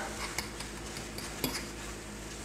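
A cooking utensil stirring seasoned ground meat in a skillet, giving two light clicks against the pan over a low steady hum.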